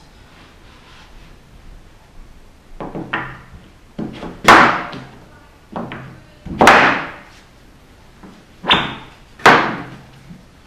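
Wooden router jig board being shoved and knocked into position against bench dogs on a perforated bench top: a series of about six short scraping thunks, the loudest about four and a half seconds in and near the end.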